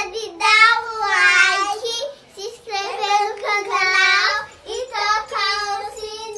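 Two young girls singing a song together, in short phrases with brief breaks between them.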